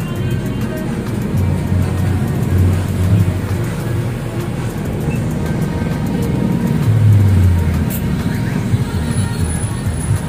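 Street traffic rumbling, with vehicles passing and the loudest swell about seven seconds in, under background music.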